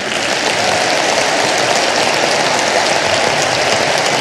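Audience applauding: dense, steady clapping that builds over the first half second and then holds.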